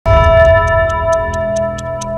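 Television news intro music that starts abruptly: a sustained synth chord over a deep bass, with a steady clock-like ticking about four or five times a second.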